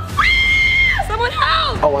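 A woman's scream: one high, steady shriek lasting just under a second, followed by shouted speech.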